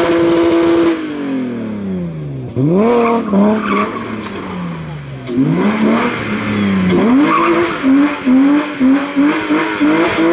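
BMW E36 drift car's engine revving high, falling away and climbing again in long sweeps as it slides sideways, then blipped on and off about twice a second near the end, with the rear tyres squealing under wheelspin.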